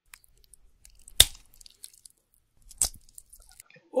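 A played-back sound sample of a penile fracture: faint crackling with two sharp snaps, the louder one about a second in and another near three seconds, the crackly noise of the erectile tissue tearing.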